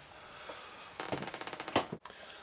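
A paper instruction booklet being handled and laid down on a table: a quick run of light clicks and rustles about a second in, ending in a louder tap.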